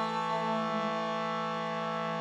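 Shruti box, a bellows-pumped reed drone instrument, sounding a steady sustained drone on the notes A and E.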